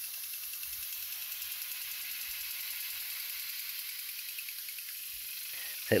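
Garden sprinkler spraying water: a steady hiss with a fast, faint ticking running through it.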